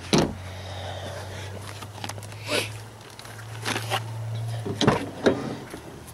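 A few dull knocks and a brief scrape from handling around a car's door and interior, over a steady low hum.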